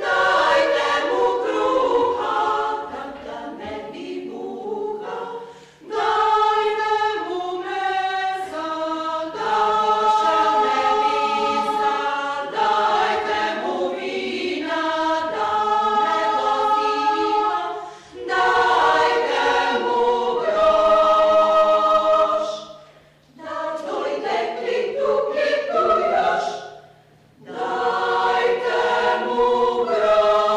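Women's choir singing sustained chords in several parts in a church, in phrases separated by short pauses about 6, 18, 23 and 27 seconds in.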